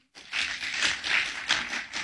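Audience applauding, starting a moment in and carrying on steadily.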